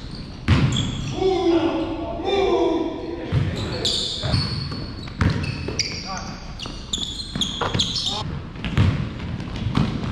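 A basketball bouncing on a hardwood gym floor at an irregular pace, with short high sneaker squeaks and players' indistinct shouts, all echoing in a large gym.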